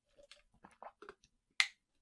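Small wet mouth sounds after a sip of water: lip smacks and a swallow, then one sharp click about a second and a half in.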